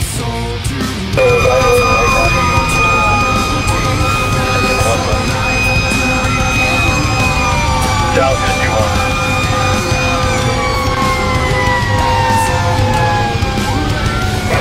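Fire engine siren sounding from the moving truck, held tones that slide slowly down in pitch, with a heavy rock song playing over it. It starts about a second in.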